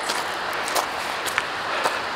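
Hiker's footfalls on a rocky trail, about four steps at an even walking pace, over a steady rushing noise.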